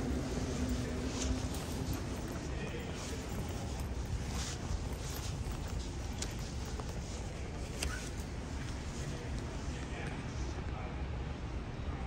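Underground railway platform ambience: a steady low rumble with scattered footsteps and sharp clicks on the hard floor, as a train draws near in the tunnel.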